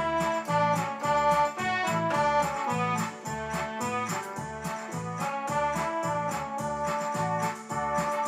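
Technics electronic keyboard playing an instrumental introduction: a melody in an organ-like voice over a steady, evenly repeating bass pattern.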